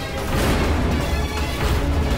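Dramatic TV-serial background score: a sudden crash-like hit about half a second in swells into a heavy, sustained low bass.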